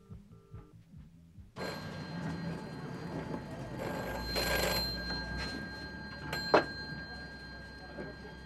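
Telephone ringing: two short pitched pulses at the very start, then, over steady street noise, a brighter ringing burst about halfway through and a sharp click near the end.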